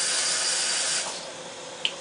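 A person's breath close to the microphone: a steady, high hiss about a second long that fades out, followed by one faint click.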